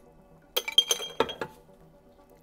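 Glass beaker clinking, a few light knocks with a short glassy ring about half a second to a second and a half in, as the last of the tissue culture media is poured out of it by hand.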